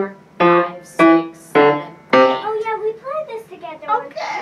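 Grand piano: four single notes struck one after another about 0.6 s apart, each ringing briefly before the next, played as a slow demonstration of the piece's four-note pattern. A voice follows in the second half.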